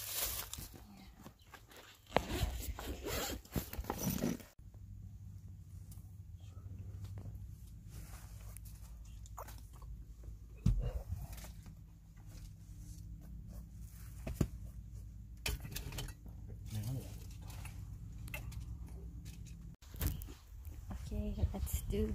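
Steady low hum of a car's engine idling, heard from inside the cabin, with scattered small clicks and clothing rustles. Outdoor rustling and handling noise come before it and return near the end.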